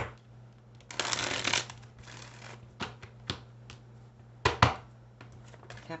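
A deck of tarot cards being shuffled by hand. A brief riffling rush comes about a second in, followed by scattered sharp clicks and taps of the cards; the loudest is a quick double click about four and a half seconds in.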